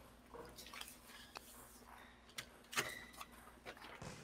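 Faint, irregular sharp taps of a table tennis ball being struck by paddles and bouncing on the table, about five in all, the loudest a little before three seconds in with a brief ring after it, over a low steady hall hum.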